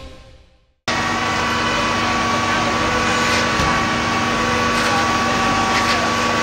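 The intro music fades out in the first second, then a sudden cut brings in the steady running of fire-apparatus engines and pumps, a constant drone with a hum of steady tones over a rushing noise.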